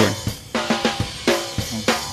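Recorded drum-kit track with snare hits played back through a software EQ plugin, its high end heavily boosted with oversampling switched off. The hits come as repeated sharp strikes with ringing between them.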